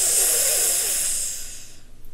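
A woman's long, hissing breath drawn or blown through the teeth, fading away near the end.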